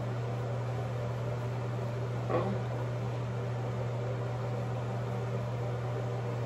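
A steady low mechanical hum with a faint hiss, like a fan or air conditioner running in a small room. There is one brief faint sound about two seconds in.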